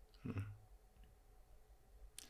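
A man's short "mm" of acknowledgement early on, then quiet room tone with a faint click about a second in.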